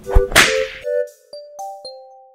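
Outro jingle: a thump and a sharp whip-crack sound effect, followed by a few keyboard notes, each starting with a click, the last one held.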